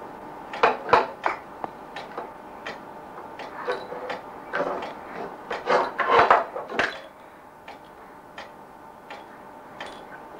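A plastic baby rattle toy clattering and knocking against a wooden highchair tray in irregular bursts: a cluster of knocks about a second in, a louder run between about four and a half and seven seconds, then a few lighter taps.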